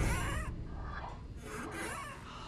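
A mechanical contraption working back and forth, squeaking and rubbing with each stroke in a repeating rhythm of a little under two strokes a second.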